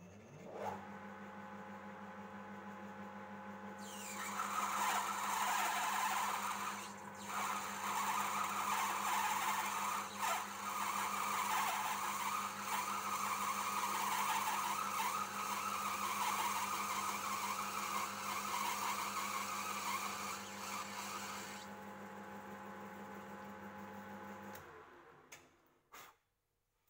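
Small metal lathe motor starting and running with a steady hum. For most of the time a cutting tool takes a first roughing pass along a spinning metal bar, turning its diameter down, and the cut adds a rough hiss over the hum with one brief break early on. The cut ends, the motor runs on alone, then it is switched off and spins down near the end.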